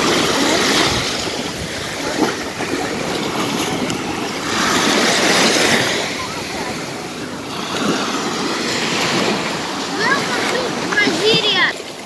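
Small waves washing onto a sandy beach, the surf swelling and easing every few seconds. Voices of people on the beach come through near the end.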